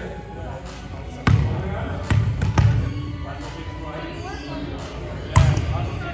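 A volleyball being hit in rally play, four sharp smacks echoing through a large gym: about a second in, twice around two to two and a half seconds, and once near the end.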